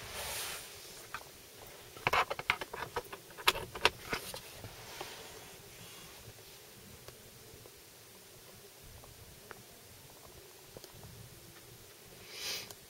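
Handling noise as a car's centre armrest lid is lifted and a USB lead is plugged into the socket inside: a quick run of plastic clicks and knocks about two seconds in, then a quiet cabin.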